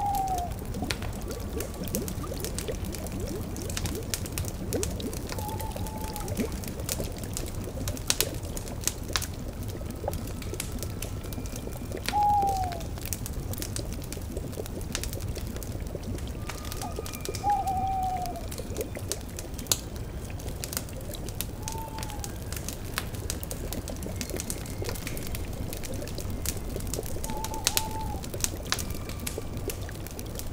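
Layered woodland ambience: an owl hooting, with six short falling hoots spread about five seconds apart, over crackling wood fire and a bubbling cauldron.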